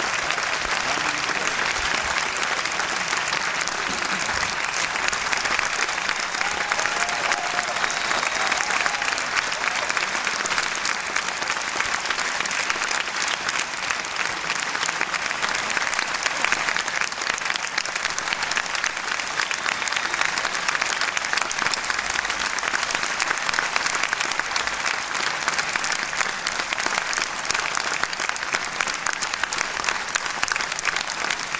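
Audience applauding steadily: dense, even clapping that holds at the same level throughout.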